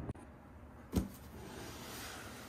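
Large cardboard toy box being handled: one sharp knock about halfway through as the box is bumped, then a faint scraping as it is tipped over to lie flat.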